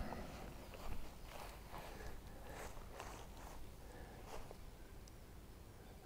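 Faint footsteps and rustling in long grass: a few soft, scattered steps and brushes, the clearest about a second in.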